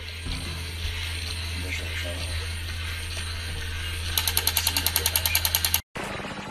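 Glitch or static transition sound effect: a steady electrical hum under a hiss of static. About four seconds in it breaks into a rapid stuttering rattle, then cuts off abruptly.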